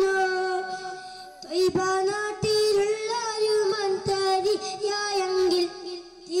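A boy singing an Islamic devotional song solo into a microphone, in long held, wavering notes, with a brief breath about a second and a half in.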